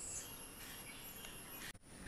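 Faint steady background hiss with a thin high whine, with a brief dropout just before the end.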